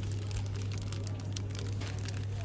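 Plastic packaging on glitter birthday sashes crinkling in a series of quick crackles as a hand pulls and sorts through them on a shop rack, over a steady low hum.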